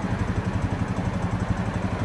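Brand-new Honda Rancher 420 ATV's single-cylinder four-stroke engine idling steadily in neutral.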